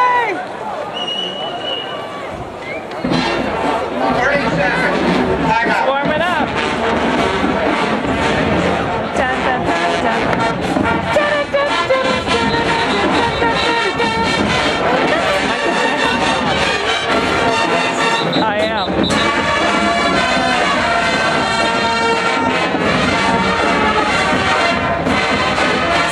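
Marching band playing brass and drum music in the stadium stands. It starts about three seconds in, over crowd chatter.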